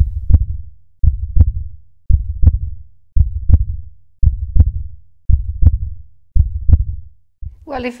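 Heartbeat sound effect: a steady lub-dub double thump about once a second, seven beats in a row. It breaks off as speech begins near the end.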